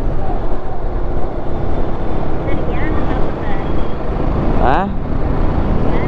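Motorcycle running at steady road speed in city traffic, a constant rumble of engine, wind and road. A short rising tone cuts through about three-quarters of the way in.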